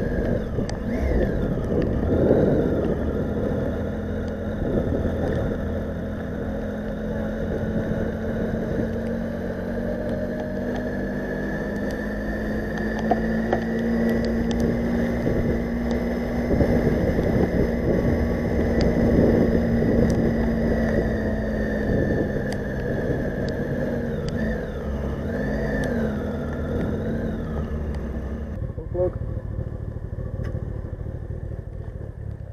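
Motorcycle engine running at low town speed, heard from the rider's camera over wind and tyre noise on a wet road; its note rises a little and falls back about halfway through. The sound changes abruptly near the end.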